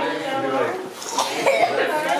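Several people talking over one another, with a cough.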